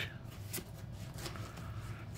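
Pokémon trading cards handled in the fingers, one card slid off the stack to show the next, faint, with a small tick about half a second in over a low steady hum.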